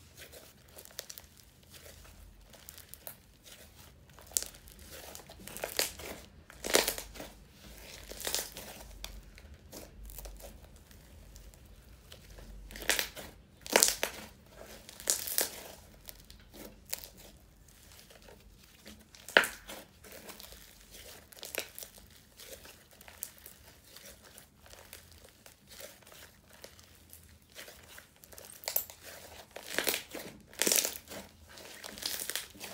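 Hands stretching, folding and squeezing a crunchy snow fizz slime, giving irregular crackles and pops as it is worked. The loudest snaps come about 7 s, 13 to 15 s and 19 s in.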